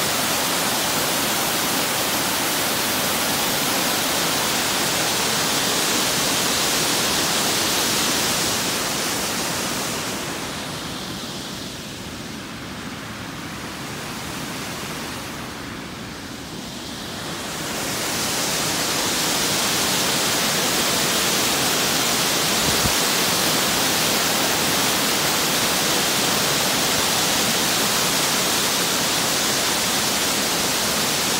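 Waterfall rushing in a steady, loud wash of white water, fed by snowmelt. It dips in level for several seconds midway, then comes back full.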